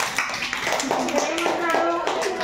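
Children clapping, several uneven claps, with a child's voice holding a note through the second half.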